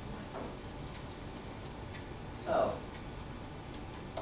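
Light, irregular clicking, a few clicks a second, over faint murmured voices. A brief, louder voice-like sound breaks in about two and a half seconds in.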